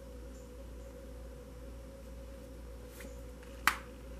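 A tarot card snapped down onto the spread: one sharp click near the end, with a fainter tap about a second before it, over a steady low hum.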